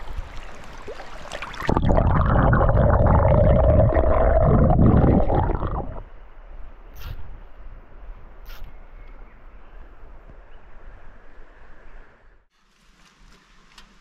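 Creek water running, broken by about four seconds of loud, muffled rumbling noise right on the microphone, with a couple of faint ticks later.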